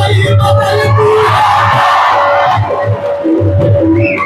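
Live music with a long held note over a steady low beat, and a crowd cheering and shouting over it about a second in for a second or so.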